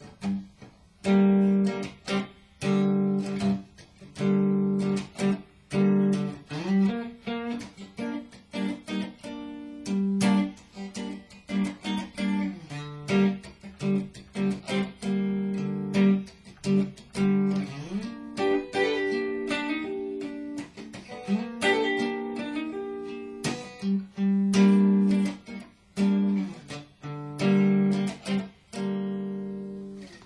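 Stratocaster-style electric guitar playing a made-up riff from three-note minor chord voicings on the 3rd to 5th strings. It runs as a string of short, sharply picked chords with brief gaps, some left to ring longer.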